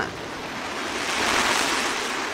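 Rushing exhaust noise of a ballistic missile launch, swelling about a second in and then easing off.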